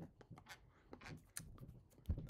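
Near silence with faint scattered clicks and rustles of hands and clothing moving while signing in sign language.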